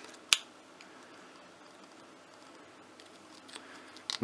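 A single sharp click of 3D-printed plastic parts knocking together as they are handled and fitted, about a third of a second in; otherwise quiet room tone.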